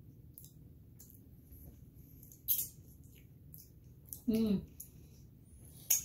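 Small mouth clicks and smacks of people eating a soft chocolate candy, with one sharper smack about two and a half seconds in and a short falling hummed voice sound about four seconds in.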